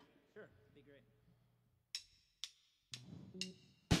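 Drumsticks clicked together as a count-in to start a song: sharp, evenly spaced clicks about two a second, beginning about two seconds in, the last one the loudest.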